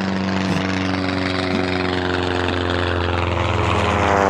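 Propeller-plane engine drone: a steady hum that grows slowly louder as the plane closes in.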